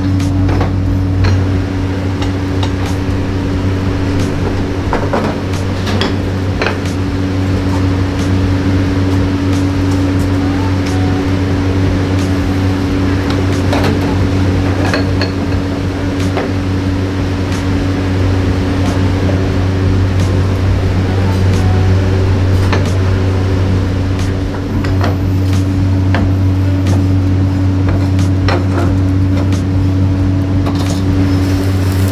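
Clay pots and their lids clinking and knocking as they are handled on a row of gas burners, over a steady low kitchen hum.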